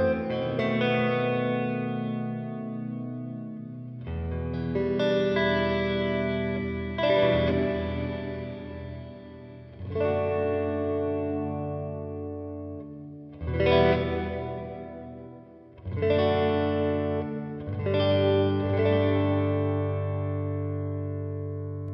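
Electric guitar chords played through a BOSS RV-200 reverb pedal on its Plate algorithm. A chord is struck every two to four seconds, and each rings out and fades slowly in the reverb tail.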